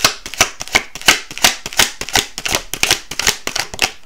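A deck of tarot cards being shuffled by hand: a quick, even run of crisp card-against-card slaps, about six a second, stopping just before the end.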